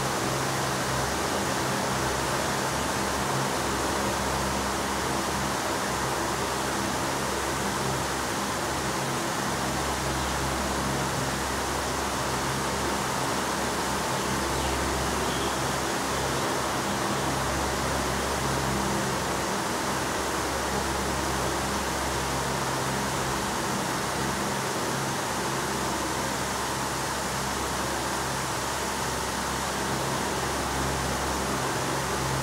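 Steady hiss of room and recording noise, with a low hum underneath that swells and fades every few seconds.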